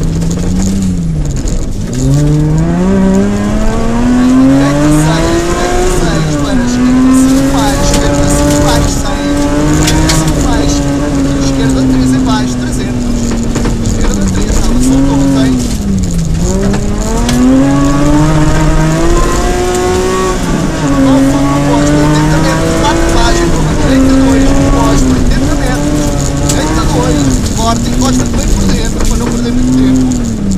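Rally car engine heard from inside the cabin, revving hard and climbing in pitch, then dropping sharply at each gear change, with two deep dips in the middle as it slows for corners. Steady rush of tyres and stones on a gravel road underneath.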